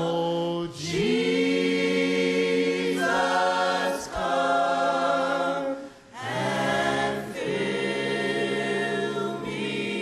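A church congregation singing a worship song together, with long held notes and short breaks between phrases.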